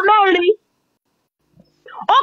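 A man's voice drawing out the end of a word for about half a second with a wavering pitch, then cutting off into about a second and a half of dead silence.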